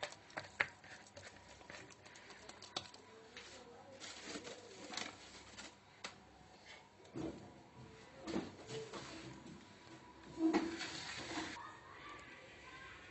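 Faint scattered handling noises: soft clicks, knocks and rustles as a plastic mixing bowl of dough is handled and covered with a cloth, with a slightly louder bump near the end.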